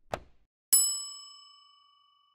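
Notification-bell chime sound effect of an animated subscribe button, struck once just under a second in and ringing out over about a second and a half, after a short click as the bell icon is pressed.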